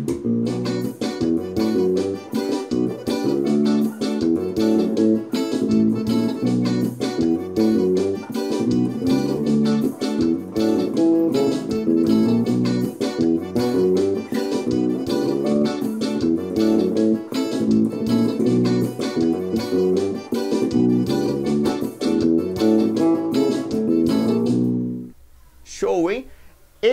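Tagima five-string electric bass playing a syncopated forró groove through G minor, D and A over a play-along backing track with steady percussion; the music stops about a second before the end.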